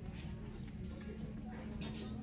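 Faint footsteps on a concrete store floor, a few soft clicks toward the end, over a steady low hum.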